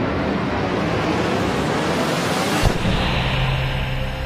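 Film trailer soundtrack: a steady rushing noise, broken by one sharp knock nearly three seconds in, after which a low steady tone sets in.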